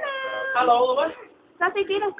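A young child's high-pitched, drawn-out vocal call lasting about a second, its pitch held level at first and then wavering.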